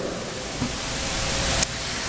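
Steady hiss of background recording noise, swelling slightly and then cutting off suddenly with a click about a second and a half in.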